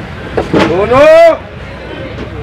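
A person's loud, drawn-out shout or call about half a second in, lasting under a second and rising then falling in pitch. It sounds over a steady low background rumble.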